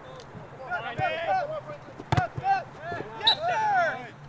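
Soccer players shouting and calling to each other on the field, several voices overlapping, with one sharp thud about two seconds in.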